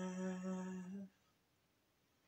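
A man's voice holding the final note of a song, steady in pitch and fading. It stops about a second in.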